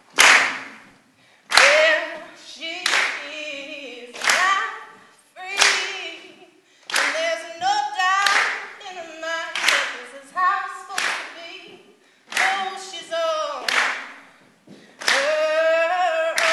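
A woman singing unaccompanied, clapping her hands about once every second and a half to keep time.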